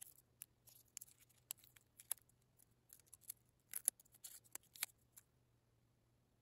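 Faint, irregular crinkles and ticks of transfer paper and tape being handled and peeled off a white-painted steel axe eye cap, about a dozen small sharp sounds that stop about five seconds in, over a faint low hum.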